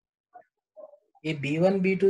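A short pause with a few faint short sounds, then a person's voice speaking resumes a little past halfway.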